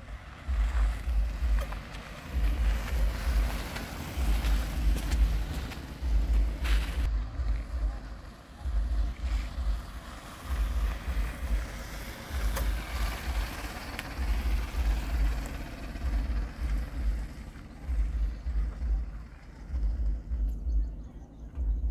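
Gusty wind buffeting the microphone in irregular low rumbles, over a Maruti Suzuki Brezza compact SUV moving slowly on a dirt road.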